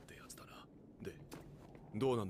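Faint, soft speech at low level: the anime episode's dialogue playing quietly.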